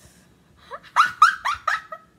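A girl's quick run of about five short, breathy, high-pitched squealing laughs, starting about a second in.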